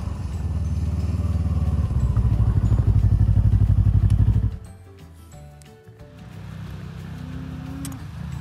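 Snowmobile engine running as the sled comes up close, getting louder with a rapid throb, then cut off abruptly about halfway through. After that, background music with held notes.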